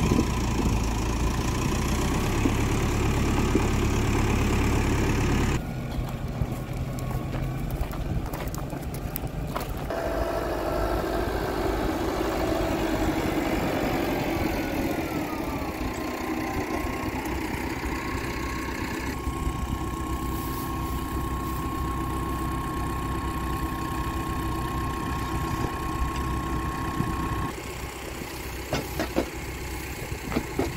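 Tractor engine running, heard in several abruptly cut segments, its pitch falling once about halfway through. Near the end it gives way to a quieter stretch with a few sharp clicks.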